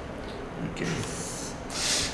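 Marker pen drawing lines on paper: two scratchy strokes, the second louder, near the end.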